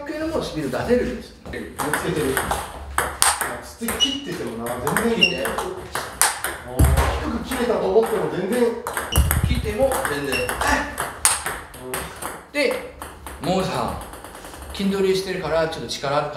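Table tennis ball being struck by paddles and bouncing on the table, a quick series of sharp clicks, with a man talking over them.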